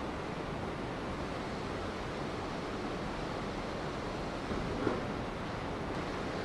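Steady background hiss of room tone, with a faint brief knock about five seconds in.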